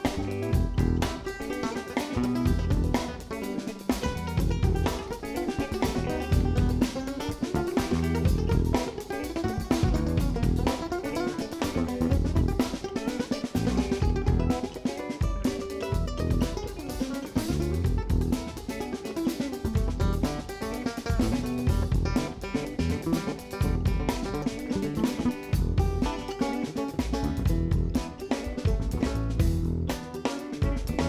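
Live band playing an instrumental passage on electric guitar, electric bass and drum kit, with no singing, at a steady level.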